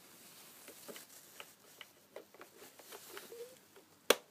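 Faint, irregular small clicks and taps of fingers handling a radio-control transmitter while a crystal is fitted into it.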